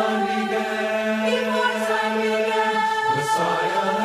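A choir singing a hymn unaccompanied, in parts, with long held notes on the words "before time began" and then "Messiah and Savior."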